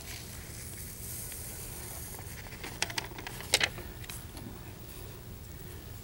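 Light clicks and taps of metal jar lids being handled on a metal tray while powdered chemicals are set out, over a faint steady hum; the clicks come around three seconds in, the sharpest about half a second later.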